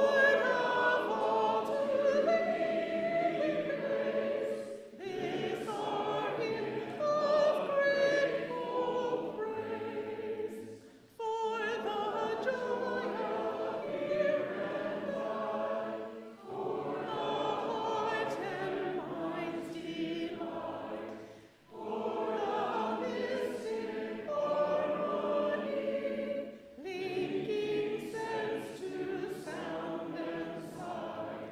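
A congregation singing a hymn together, in sung phrases about five or six seconds long with short breaks for breath between them.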